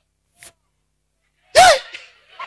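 About a second and a half of near silence, then one short, loud burst of a man's voice through a handheld microphone: a sharp, sneeze-like exclamation whose pitch rises and falls.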